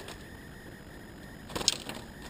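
Faint steady background hiss, then a brief cluster of sharp rattling clicks near the end as the plastic laundry-basket trap holding a bird is handled.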